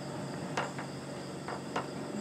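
Crickets chirring steadily in the background, with a few faint clicks about half a second in and near the end.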